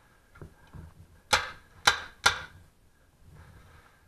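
A paintball marker firing three sharp shots about half a second apart, after a couple of faint knocks.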